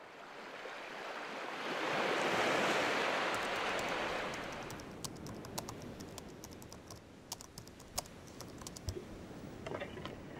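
A rush of surf-like noise swells up and fades away, then typing on a laptop keyboard: quick, irregular key clicks through the second half.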